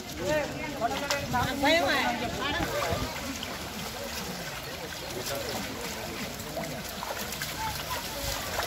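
Several voices and a laugh early on, then a steady wet sloshing and squelching of many feet walking through mud and shallow water.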